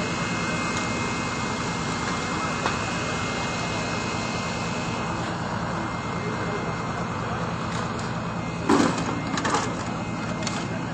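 Steady drone of a machine motor running, with a constant hum, and a brief burst of voices about nine seconds in.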